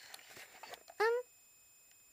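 Speech only: a woman's single short, high-pitched "um" about a second in, with faint room noise either side.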